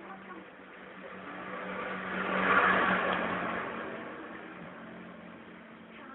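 A motor vehicle passing by: its engine and road noise swell to a peak about halfway through and then fade away, over a steady low hum.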